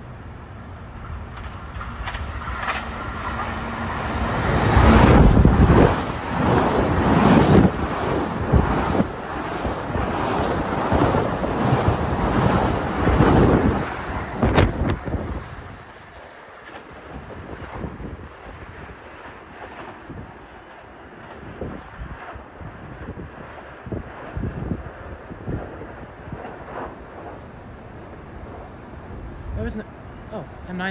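A Long Island Rail Road electric multiple-unit train passing close along the platform, its wheels clattering over the rail joints, with wind buffeting the microphone as it goes by. The sound builds over the first few seconds, is loudest from about five to fifteen seconds in, then drops off sharply.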